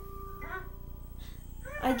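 Faint cartoon soundtrack from a TV across the room: a few held musical notes and brief cartoon character vocal sounds. A child's voice starts right at the end.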